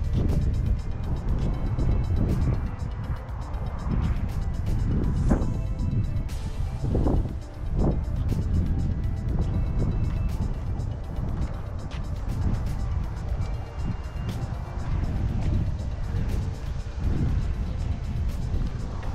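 Wind buffeting the microphone in a steady low rumble, under quiet background music.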